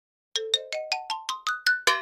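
A short electronic chime sound effect: about a dozen quick notes climbing steadily in pitch, starting about a third of a second in and ending on a brighter note that rings on briefly.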